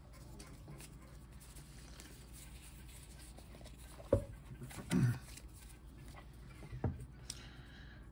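Quiet handling of a stack of Pokémon trading cards, with a soft knock about four seconds in and another near seven seconds. A brief low vocal sound comes about five seconds in.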